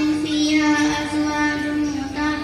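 A girl reciting the Quran into a microphone in a melodic chant, holding long, steady notes with short breaks between phrases.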